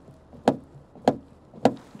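Three sharp knocks on the open front door of a Geely Monjaro, about two thirds of a second apart, each with a brief ring: knuckles rapping the door to judge its sound insulation, and this door rings with no secondary echo.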